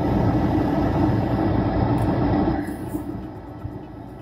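A motor vehicle passing close by: a low engine and road rumble that swells up, holds for a couple of seconds, then fades away.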